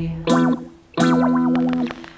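Instrumental passage of a song: guitar chords, a short one and then a longer held one after a brief pause.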